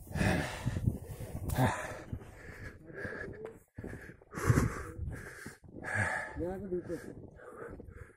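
A man breathing hard and panting from the climb at high altitude: repeated heavy breaths in and out, with a short voiced groan about six and a half seconds in. The laboured breathing is the sign of breathlessness in thin air.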